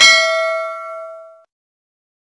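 Notification-bell sound effect: a single bell ding that rings with several tones at once and fades out over about a second and a half.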